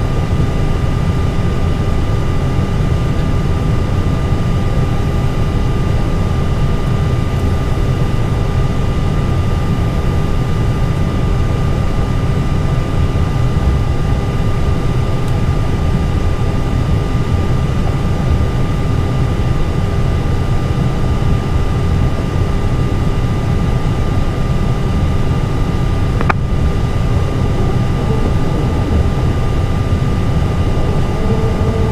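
Steady cockpit noise of an Airbus A320 on the ground before engine start: a constant low rumble with a few steady high whines from the aircraft's ventilation and auxiliary power unit, unchanging throughout, with one faint click near the end.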